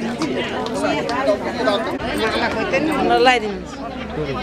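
Several people talking at once, overlapping crowd chatter with no music playing.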